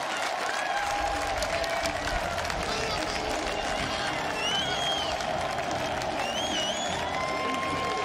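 Stadium crowd noise of cheering and applause after a touchdown, steady throughout, with a few high wavering cheers or whistles rising over it.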